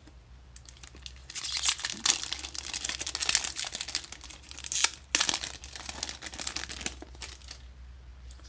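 Foil wrapper of a Magic: The Gathering collector booster pack being torn open and crinkled by hand: a run of sharp crackles lasting about six seconds, loudest around two and five seconds in.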